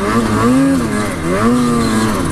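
Ski-Doo Freeride 154 Turbo snowmobile's turbocharged two-stroke engine, heard from the rider's seat, pulling through deep powder. Its pitch rises and falls back twice, about once a second, as the throttle and load change.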